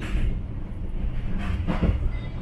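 Overnight sleeper train running, heard from inside the cabin: a steady low rumble of the wheels on the track, with a brief knock near the end.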